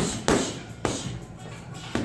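Boxing gloves striking a hanging Everlast heavy bag: four sharp, unevenly spaced thuds in two seconds, over background music.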